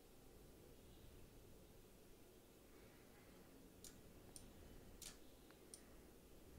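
Near silence with four faint computer mouse clicks in the last two seconds, made while layers are selected and moved in editing software.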